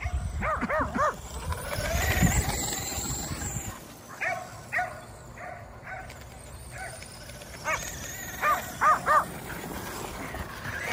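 Kerry Blue Terriers barking in short clusters as they chase: three quick barks near the start, two more around the middle and a run of four near the end. Between the first barks a faint rising and falling whine from the radio-controlled truck's electric motor is heard.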